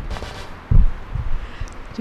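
Irregular low thuds and rumble on an outdoor microphone, the loudest a little under a second in, followed by a few weaker bumps.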